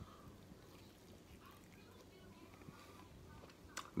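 Near silence, with faint mouth noises of biting and chewing into a smoked pork spare rib.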